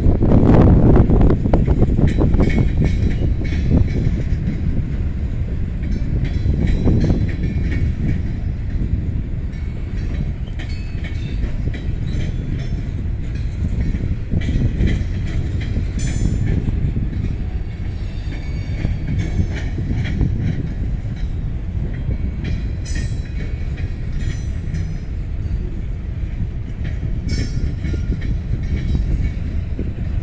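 CSX freight train cars rolling past: a steady rumble of steel wheels on rail, broken by irregular clicks and clanks as the wheels cross the joints. The rumble is loudest in the first couple of seconds.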